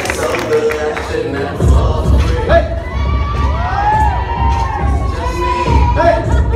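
A crowd cheering and shouting. About a second and a half in, a song with a heavy bass beat starts over the speakers, and the cheering carries on over it.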